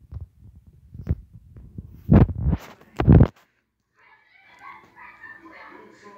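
Handling noise on a phone's built-in microphone: low muffled thumps and rustles, with two loud, short bursts about two and three seconds in.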